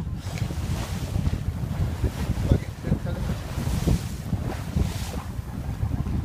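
Wind buffeting the microphone over the rush of water along the hull of a sailboat under sail in a choppy sea, with a few brief louder surges of waves or spray.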